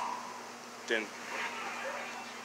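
A steady low hum in the background, with one short spoken word about a second in and faint talk after it.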